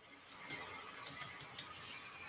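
A handful of light, sharp clicks, about six in little more than a second, over faint room hiss.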